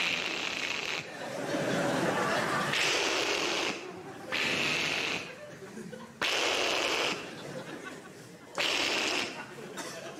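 Large theatre audience laughing and applauding after a punchline, in several surges that rise and drop away.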